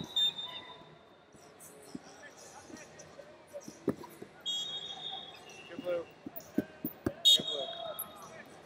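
Wrestling arena sounds: scattered thuds and slaps of bodies hitting the mat, a few distant voices, and several short, high referee whistle blasts, the loudest coming near the end.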